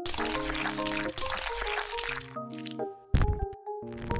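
Background music with a wet, liquid-sounding sound effect for the popping: a noisy stretch over the first two seconds, then a short sharp hit a little after three seconds in.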